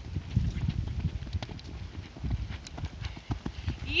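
Horse hooves thudding irregularly in loose sand as a horse climbs a sandy slope at speed. A rider's rising "yeehaw" starts at the very end.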